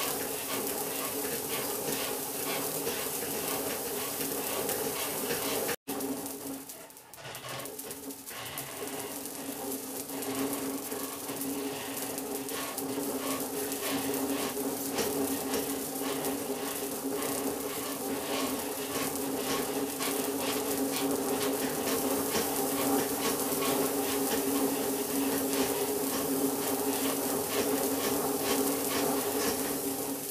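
Wimshurst machine running, a steady whir with a fine sizzling crackle from the high-voltage discharge driving a small electrostatic rotor. It cuts out abruptly about six seconds in, builds back up, and starts dying away right at the end.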